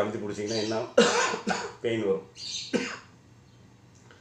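A man's voice in short bursts, broken by two or three sharp coughs or throat-clearings from about a second in.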